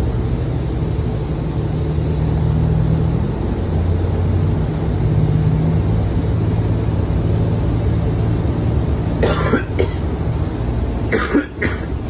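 Inside a New Flyer XDE40 hybrid diesel-electric bus under way: a steady low drone of the drivetrain and road noise, shifting slightly in pitch about three seconds in. Two short, sharp noises come near the end.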